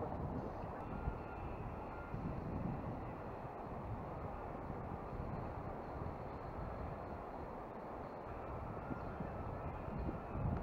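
Steady, even outdoor background noise by a river, low in pitch and without any distinct events.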